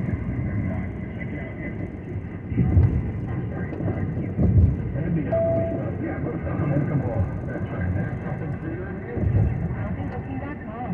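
Road and engine rumble inside a moving car, swelling a few times over bumps, with the car radio's talk station playing low underneath.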